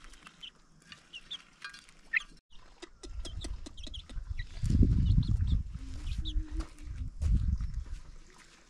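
Chickens making short high calls while pecking at scattered maize kernels, with light clicks from the pecking. From about three seconds in, a heavy low rumble sets in under the calls and is loudest around the middle and again near the end.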